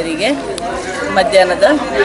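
Speech only: a woman talking into the microphones.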